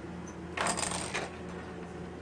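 A brief jingling rattle from the baby walker, a quick cluster of clicks lasting under a second about half a second in.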